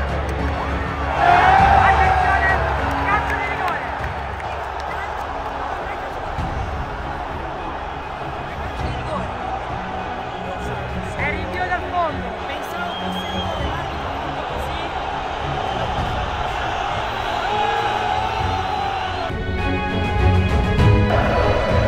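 Stadium crowd erupting into a roar about a second in, with yells and whistles, then sustained cheering and chanting from the stands, the celebration of a goal that is later ruled offside.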